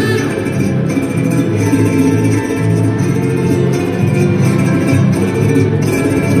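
Cueca coya folk music with plucked strings and a steady, even beat.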